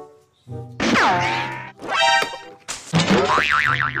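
Cartoon-style comedy sound effects over music: a boing-like tone that falls steeply in pitch about a second in, then a wobbling, warbling tone near the end.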